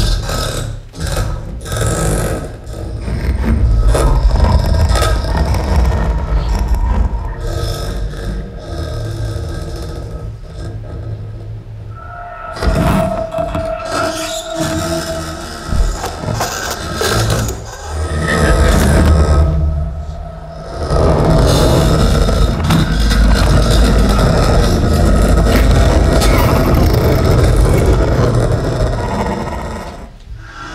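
Open cardboard box bowed and scraped, its sound amplified and transformed by live electronics into dense, noisy layers with a heavy low end. It surges and drops back in several waves, with a brief held tone about halfway through and a long loud stretch in the last third.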